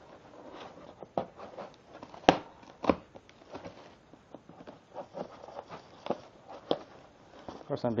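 Metal staples being worked loose and pulled out of a cardboard carton's seams: cardboard rustling and scraping with scattered sharp clicks and snaps, the loudest a little over two and about three seconds in.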